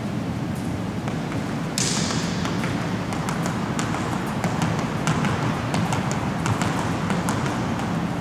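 Quick sneaker footfalls tapping on a hardwood gym floor, starting about two seconds in, as a player shuffles backwards through a flat agility ladder. A steady low room hum runs underneath.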